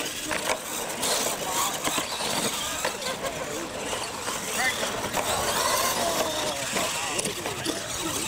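Radio-controlled monster trucks racing side by side on concrete after the start: a steady running noise of motors and tyres, with scattered short knocks as they cross the wooden ramps, under onlookers' chatter.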